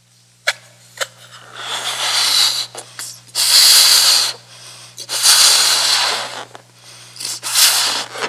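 A man blowing up a rubber balloon by mouth: four long puffs of breath into it with short pauses between, after two short clicks near the start.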